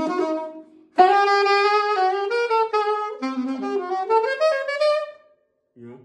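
Saxophone playing an improvised jazz line built on the bebop scale: one phrase tails off in the first second, then a new run of quick notes starts sharply about a second in and stops about five seconds in.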